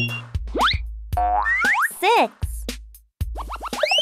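Cartoon sound effects over children's music: quick whistle-like glides rising and falling in pitch, over a pulsing bass beat. A longer rising sweep comes near the end.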